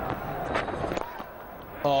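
Stadium crowd noise during a cricket delivery, with the crack of the bat striking the ball about half a second in as the batsman plays an inside-out drive.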